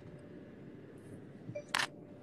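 Faint steady hum with one sharp click near the end, from the phone being handled.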